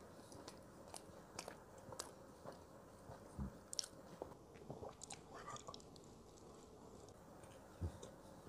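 Faint chewing and mouth sounds of a man eating roti bakar, thick Indonesian toasted bread, picked up close by a clip-on microphone. Scattered small clicks and smacks, with a soft thump about three seconds in and another near the end.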